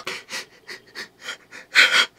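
A man's rapid, breathy gasps of stifled laughter, about five a second, with a louder breath near the end.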